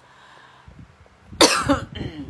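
A woman coughs once, loudly and suddenly, about a second and a half in; she has catarrh.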